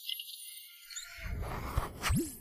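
Animated title-card sound effects: a high sparkling shimmer that fades over the first second, then a whoosh with a low rumble that swells from about a second in and peaks near the end.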